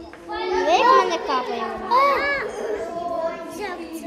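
Children's voices: two loud, high-pitched exclamations about one and two seconds in, then quieter chatter.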